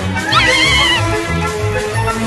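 Orchestral cartoon score with a steady beat in the bass. About a third of a second in comes a short, high, wavering scream from the two cartoon mice, lasting under a second.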